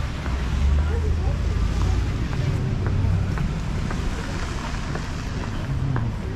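Wind buffeting the microphone as a loud, uneven low rumble while walking on a snowy sidewalk, with faint voices of passersby and light footsteps under a second apart.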